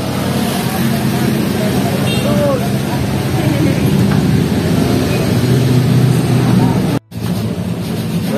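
A motor vehicle engine running steadily at idle, a constant low hum. About seven seconds in it cuts out for a moment.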